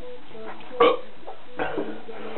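A man burping after drinking a lot of apple juice: one short loud burp just under a second in, then a weaker one a little later.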